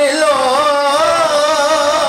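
A man singing a naat, holding one long note that wavers slowly up and down in pitch.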